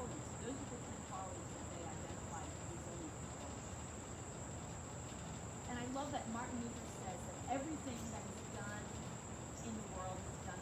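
Crickets chirring in a steady chorus, a constant high-pitched shrill tone with no break.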